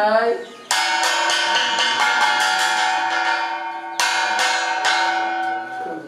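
A bell-like chime rings out twice, first about a second in and again at about four seconds. Each time it starts with a flurry of quick strokes, then rings on and fades slowly. A voice is heard briefly at the very start.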